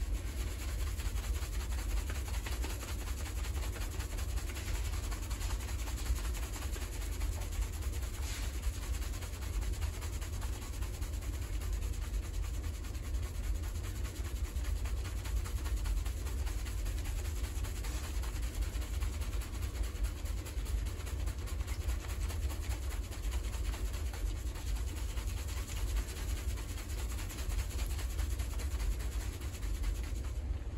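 Fingers vigorously scrubbing a shampoo-lathered head of hair: a continuous squishy, crackling rustle of foam worked through wet hair, with a constant low rumble underneath.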